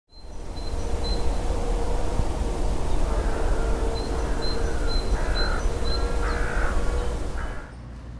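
Outdoor winter ambience: a steady low wind rumble, with about five short bird calls from about three seconds in.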